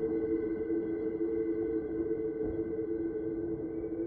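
Dark ambient background music: a steady drone of sustained low tones held over a low rumble, unchanging.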